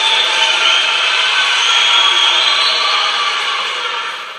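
A loud, steady rushing noise with a faint thin whine in it, fading out near the end.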